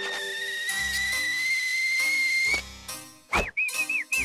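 Cartoon whistle: one long, slowly rising whistled tone over background music, then a sudden swish and a quick run of short whistled chirps that ends in a falling glide.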